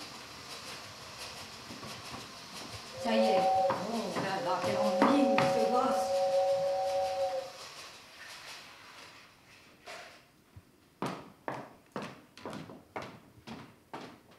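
A toy train's two-note whistle held for about four seconds over a steady hiss, then footsteps striking a hard floor, about two a second.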